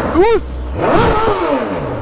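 BMW S1000 motorcycle's inline-four engine, running under way with steady wind and road noise. About a second in it revs up and falls back once.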